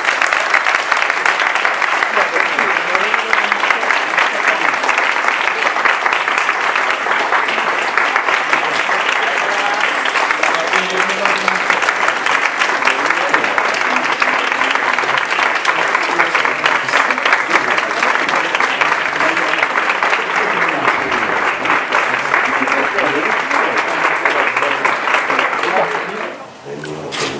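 A crowd of people clapping steadily and at length, a dense even applause with voices mixed in.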